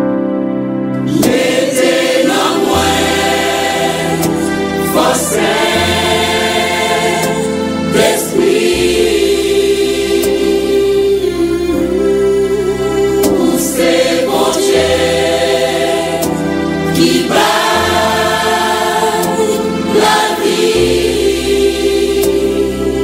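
Gospel music: a choir singing long held notes over a bass line that moves to a new note every few seconds, the accompaniment filling out about a second in.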